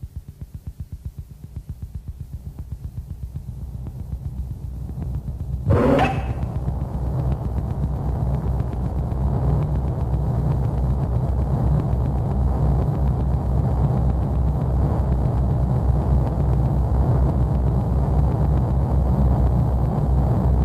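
Industrial noise music from a cassette: a fast, low pulsing throb that swells, then a sudden loud sweeping hit about six seconds in, after which it turns into a dense, steady low rumbling drone with hiss above it.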